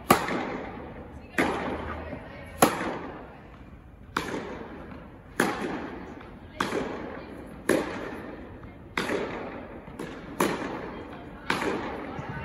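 Tennis ball struck back and forth by rackets in a rally, ten sharp hits about a second and a bit apart, each echoing through an indoor tennis hall.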